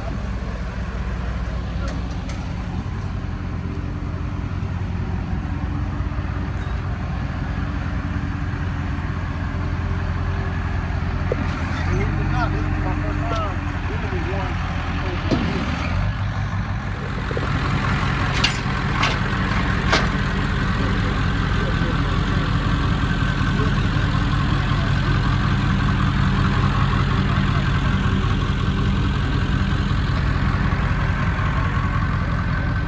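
Flatbed tow truck's engine idling with a steady low hum that steps up slightly around twelve seconds in and again a few seconds later. A few sharp metallic clicks come around eighteen to twenty seconds in.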